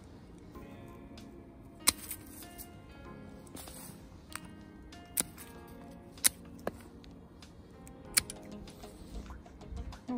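Hand pruning shears snipping through woody panicle hydrangea stems: four sharp cuts spread a second or more apart, with a few fainter clicks between, over quiet background music.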